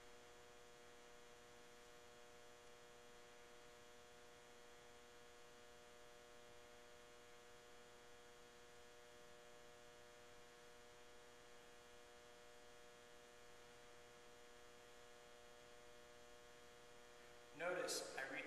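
Near silence: a faint, steady electrical hum made of many evenly spaced tones, with no footsteps or other sounds.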